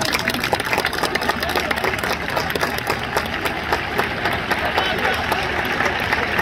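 Stadium crowd at a football match: many scattered, irregular handclaps over a murmur of voices, steady throughout.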